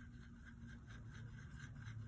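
Faint soft scraping of a small paintbrush working paint in a plastic palette well.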